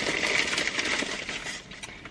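Rustling and handling noise as a heavy decorative sphere is picked up from beside the driver's seat, fading toward the end.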